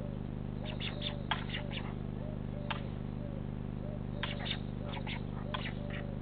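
Steady electrical hum from the nest camera's microphone. A faint tone repeats under it about every two-thirds of a second. Small birds chirp in short bursts of quick notes on top, about a second in, near the middle and again later.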